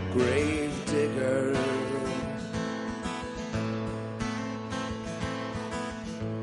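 Solo acoustic guitar played live, strummed in a steady rhythm of chords.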